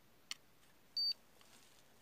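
A CellMeter 8 battery checker gives one short, high beep about a second in as it powers up on a freshly plugged-in battery lead, after a single small click from the plug going in.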